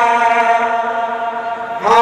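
A male kirtan singer holds one long sung note of an Odia bhajan through a microphone and PA, easing off slightly. A new loud phrase starts just before the end.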